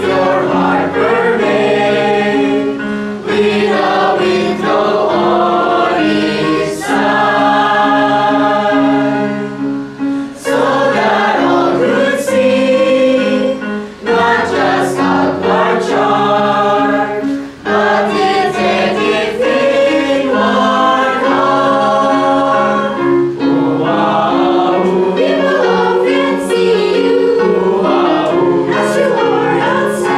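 Mixed church choir of male and female voices singing a gospel song in phrases, with short breaths between lines.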